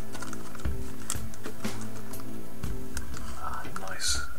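Background music playing steadily, with small irregular clicks and crinkles of zip-lock plastic bags being handled.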